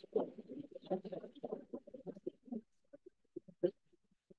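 Audience applause, faint and broken up by video-call audio processing into choppy fragments. It thins out over about three and a half seconds and stops.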